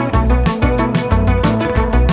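Instrumental passage of an indie rock song: guitars and bass guitar over drums keeping a steady beat.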